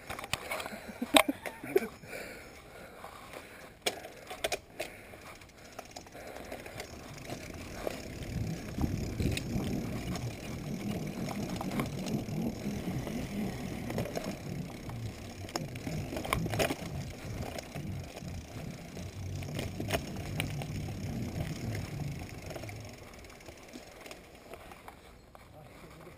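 Corratec mountain bike ridden over a rough dirt trail: tyres rolling and the bike rattling, with sharp clicks and knocks in the first few seconds and a louder rumble from about eight seconds in until near the end.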